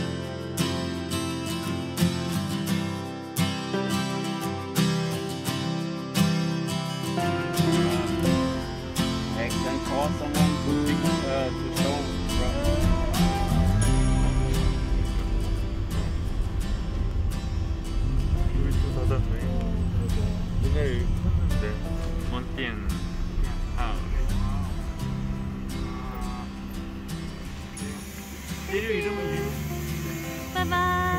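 Acoustic guitar background music with steady strumming. From about seven seconds in, a van cabin's low engine and road rumble joins it, with voices talking over it.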